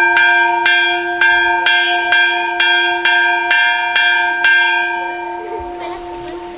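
A bell rung by hand with a pulled rope, struck in a steady run about twice a second. The strikes stop about five seconds in and the bell rings on, fading.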